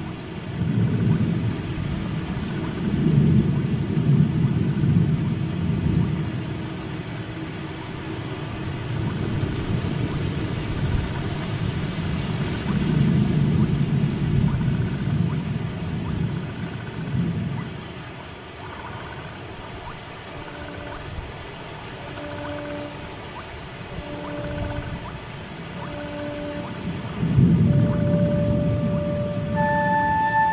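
Steady rain falling, with low thunder rolling in three long rumbles: at the start, in the middle and near the end. From about two-thirds of the way in, soft, spaced-out held notes of a music score play over the rain.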